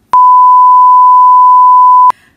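Loud, steady 1 kHz test-pattern tone, the beep that goes with television colour bars, held for about two seconds and then cut off suddenly.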